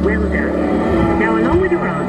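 A dark ride's onboard soundtrack: music with long held chords and a voice over it.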